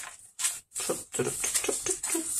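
Paper pages of a handmade junk journal being leafed through by hand: a short rustle about half a second in, then a run of quick, irregular paper rustles as the pages are turned.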